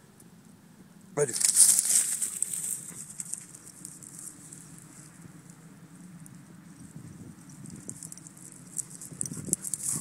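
Rustling noise of dry grass and brush: a sudden loud burst about a second in that fades over the next two seconds, then faint rustling that grows again near the end.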